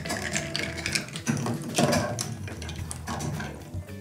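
Bar spoon stirring ice in tall cocktail glasses: a run of light, irregular clinks and ticks of ice and metal against glass, thinning out toward the end.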